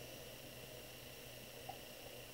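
Faint room tone: a low steady hum under a light hiss.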